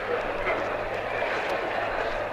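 Background noise of an old broadcast recording dubbed from disc: a steady hiss and low hum with a few faint clicks, and a hearing-room murmur underneath.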